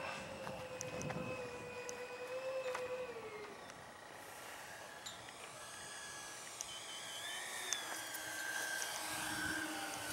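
Electric ducted-fan motor of a radio-controlled MiG-29 model jet whining on landing approach. Its pitch falls about three seconds in, and a second steady whine rises near the end.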